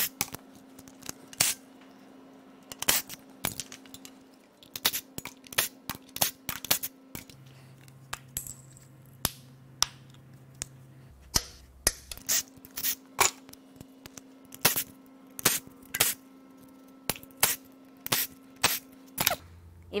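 Irregular sharp metallic clinks and clicks, dozens of them spread through the whole stretch: bolts, small metal parts and hand tools knocking and being set down while parts are unbolted from the front of an engine.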